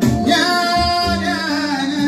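Kora being plucked, with a voice singing over it; a sung line enters about a third of a second in and wavers before falling away past the middle.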